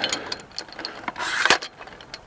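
Metal tripod leg being lengthened by hand: a string of small clicks and rattles from the leg and its adjustment knob, with a short scrape and a sharper clack about a second and a half in.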